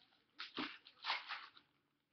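Rustling and scraping of a football trading card box and its packaging being handled, in two short bursts about half a second and a second in, then dying away.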